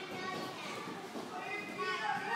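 Young children's voices chattering and playing in a large gym hall, with no clear words.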